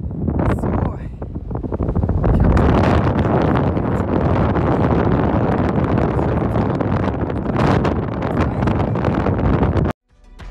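Strong wind buffeting the phone's microphone: loud, gusty, low rumbling noise that smothers a voice. It grows louder about two seconds in and cuts off suddenly just before the end.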